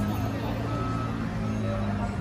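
Steady low hum of street traffic and idling vehicle engines, with a faint high beep repeating roughly once a second and background voices.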